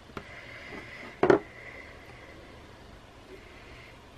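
Quiet handling of paper and a glue stick as a paper tab is glued and placed, with one short, sharp noise about a second in.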